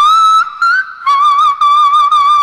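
Female singer's very high sung notes around D6, with no accompaniment. A short note slides slightly upward, then a brief higher note, and about a second in she holds a note with vibrato.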